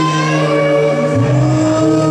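Live band playing an instrumental passage of long held notes on guitars over bass and drums, the bass stepping down to a lower note about a second in.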